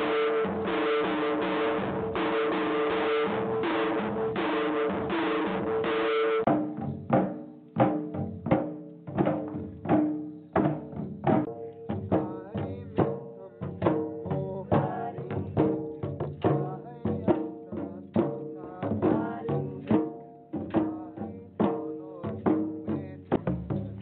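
Limbu chyabrung barrel drums beaten for a dance. The sound is dense and continuous for about the first six seconds, then breaks into separate, ringing drum strokes at about two a second.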